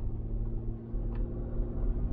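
Steady engine and road rumble inside a moving vehicle's cabin, with a low, even drone.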